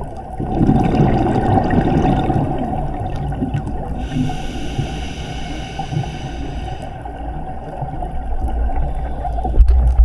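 A scuba diver breathing through a regulator, heard underwater over a steady low water rumble: a gurgling rush of exhaled bubbles, then a few seconds of hiss as the diver inhales. A sharp knock comes near the end.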